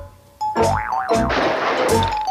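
Cartoon closing music with a boing sound effect whose pitch wobbles quickly up and down, followed by a short burst of hiss before the music carries on.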